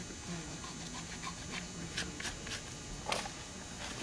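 Faint brushing and a scattered handful of light ticks and scrapes as a gloved hand wipes over a horse's trimmed hoof sole.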